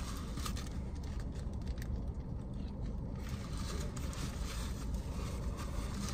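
Someone biting into and chewing a burger, with soft crackling of its paper wrapper, over a steady low hum in a car cabin.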